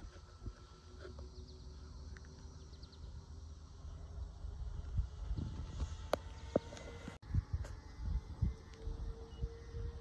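Faint, distant drone of a Nexa OV-10 Bronco RC model plane's twin motors in flight, a thin steady tone that grows a little in the second half, under gusty wind rumble on the microphone. A few sharp clicks come about six seconds in.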